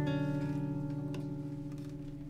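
Final chord of the song on acoustic guitars ringing out and slowly fading after the last sung line.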